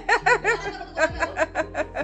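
A woman laughing, a quick run of short laughs.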